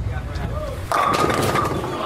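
Bowling ball rolling down the lane with a low rumble, then crashing into the pins about a second in: a loud clatter of pins that lasts about a second.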